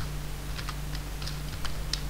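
Computer keyboard being typed on: a run of separate key clicks at about four a second, over a steady low hum.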